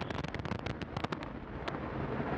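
Antares rocket's two AJ26 first-stage engines at full thrust during the climb: a dense rushing roar shot through with rapid, irregular crackling.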